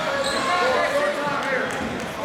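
Spectators in a gym shouting and calling out to the wrestlers, many voices overlapping with no clear words.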